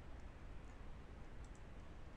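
A few faint computer mouse clicks over a low, steady hiss.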